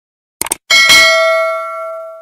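Subscribe-button animation sound effect: a quick double mouse click about half a second in, then a notification bell ding with several ringing tones that slowly fades out.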